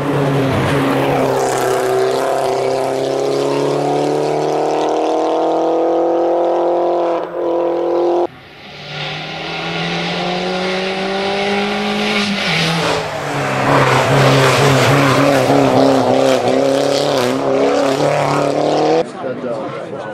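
Mini Cooper JCW race car's turbocharged four-cylinder engine pulling hard uphill under full throttle, its pitch climbing slowly through long gears with sudden breaks at the shifts. It grows louder as the car nears.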